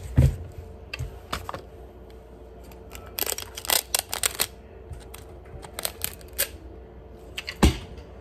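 Handheld packing-tape dispenser being handled: scattered sharp clicks and short rasps of tape, busiest from about three to four and a half seconds in, with a loud knock just after the start and another near the end.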